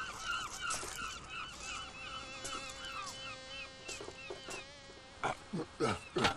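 Seagull calling: a fast run of short yelping notes, about three a second, that fades out about three seconds in. A steady tone sounds beneath it through the middle.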